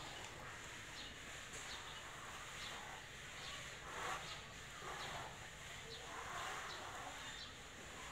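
A run of short, faint scraping strokes: plastering floats rubbed over freshly applied cement render on a wall, repeating irregularly about once a second or faster.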